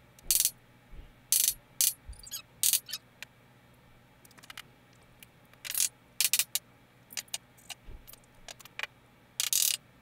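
Irregular short, sharp clicks and clatters of hand tools and hardware being handled while fitting a wall stud, about a dozen spread through, the loudest near the start and just before the end.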